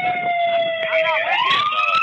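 Police car siren on a slow wail: its pitch falls steadily, then rises again about a second in.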